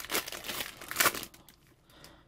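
Wrapper of a baseball card pack crinkling as it is handled and opened to get at the cards, a busy crackle for about the first second and a half that then stops.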